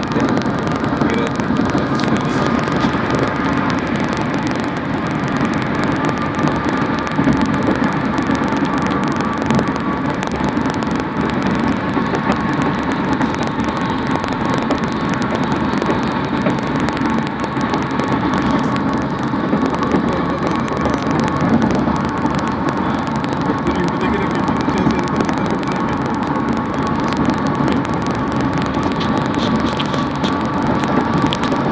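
Steady road and engine noise inside a vehicle moving at highway speed, an unbroken rumble and hiss with a faint steady whine.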